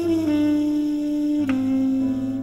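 Latin jazz band recording: a single melody line holds long notes that step down in pitch twice, over a sustained bass note.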